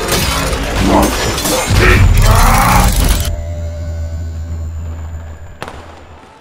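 Intro logo sting: music laid with glass-shattering and impact sound effects, which about three seconds in give way to a low boom that rings on and fades out.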